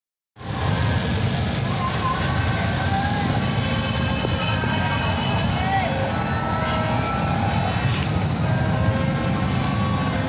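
Street traffic: a steady rumble of motorcycle and car engines passing, with short, thin higher tones now and then.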